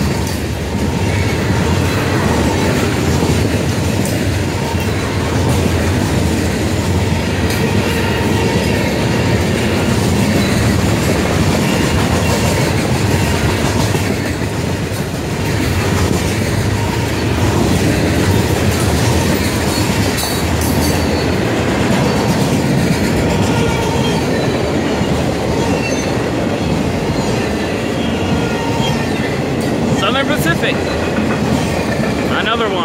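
A Florida East Coast freight train's hopper cars passing close by at speed: a steady, loud rumble and clatter of steel wheels on the rail.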